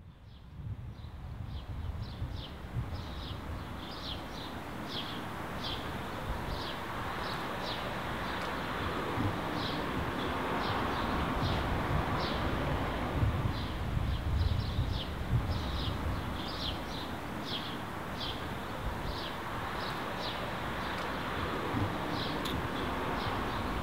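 Outdoor ambience fading in over the first second: a steady low rumble with a bird giving short, high chirps over and over.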